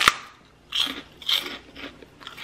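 A crisp pork rind bitten with one sharp crunch at the start, then chewed with three crunchy chews.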